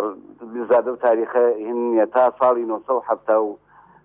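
Speech: a man talking steadily, with a few short pauses.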